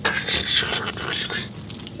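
Craft knife blade scraping through cardboard, fading after about a second. It is the sound that tells the blade is getting dull.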